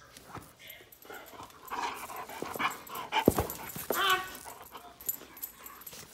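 Young Vizsla-Labrador mix dog whining to be let outside, a short pitched cry about four seconds in, among scattered clicks and one sharp knock a little over three seconds in that is the loudest sound.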